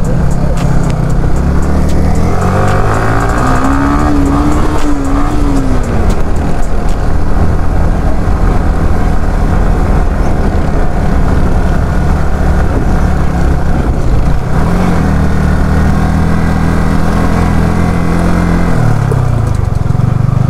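Yamaha R15 V3's single-cylinder engine running loud at low speed, its pitch rising and then falling twice as the throttle is opened and eased off.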